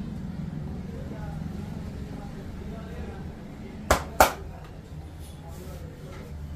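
Two sharp clicks about a third of a second apart from the barber's hands working the client's upper back during a massage. They sound over a steady low hum and faint background voices.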